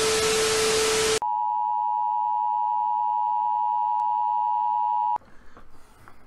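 TV static hiss with a steady low tone under it, cut off about a second in and replaced by a steady, higher colour-bars test tone that holds for about four seconds and stops abruptly. It is a broadcast-interruption sound effect standing in for a censored swear word.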